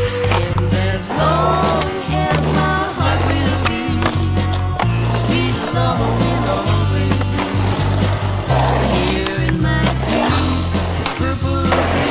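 A music track with a bass line and melodic parts that bend in pitch, over skateboard sounds: wheels rolling on concrete and the knocks of the board's tail and trucks hitting and landing.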